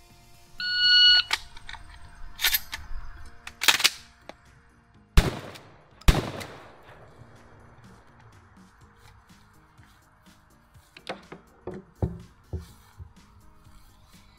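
An electronic shot timer gives one short beep, then about four and a half seconds later a 12-gauge shotgun fires twice, just under a second apart; the two shots are the loudest sounds. A couple of sharp clacks fall between the beep and the first shot, and a few lighter clicks come near the end.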